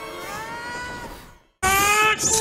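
A cat meowing: one long call that rises in pitch and then levels off, fairly quiet, over faint film music. It breaks off into a moment of silence near the end, and a louder pitched sound cuts in suddenly.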